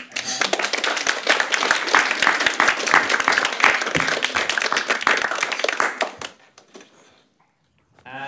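Audience applause: many people clapping for about six seconds, then dying away.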